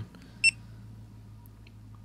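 GoPro HD Hero2 action camera giving one short, high electronic beep about half a second in as its front mode button is pressed.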